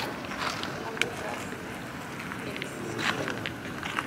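Quiet outdoor ambience with faint voices in the background and a couple of light clicks, about a second in and again near three seconds.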